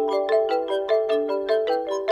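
Background music: a quick, even run of pitched notes, about six or seven a second.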